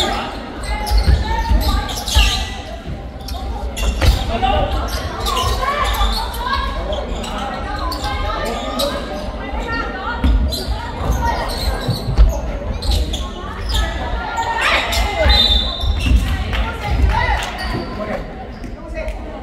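Basketball bouncing on a hardwood gym floor during play, repeated thuds echoing in a large hall, with indistinct players' and spectators' voices.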